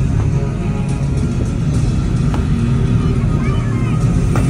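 Loud show soundtrack music with a heavy, rumbling low end, with a few sharp cracks over it.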